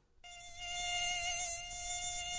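A mosquito's buzzing wingbeat whine, one steady high pitch, starting a moment in and swelling louder over the first second before holding steady.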